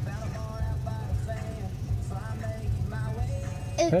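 Country music playing from a car radio, heard inside the vehicle's cabin, with a low steady hum beneath it.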